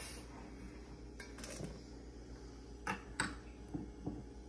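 A few light clicks and knocks of kitchen utensils and bowls being handled, over a faint steady room hum.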